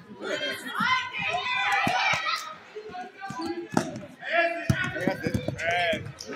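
Many voices of spectators and children in a gym, with a basketball bouncing on the hardwood court as it is dribbled: a sharp knock about two seconds in, another near four seconds, and several in a row near the end.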